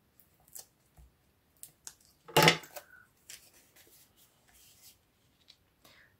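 Paper and tape being handled in card-making: scattered small rustles and clicks, with one louder rustle about two and a half seconds in.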